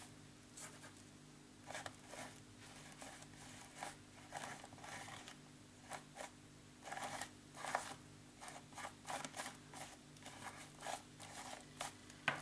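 Paint being dabbed and scraped through a letter stencil onto a paper journal page: quiet, irregular short scratchy strokes, over a faint steady hum.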